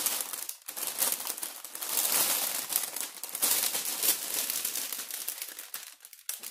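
Clear plastic protective film on a diamond painting canvas crinkling and crackling as it is handled and pulled back, with the stiff canvas rustling; there is a brief pause about half a second in.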